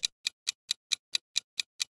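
Clock-ticking sound effect counting down a quiz answer timer: short, sharp, evenly spaced ticks, about four and a half a second.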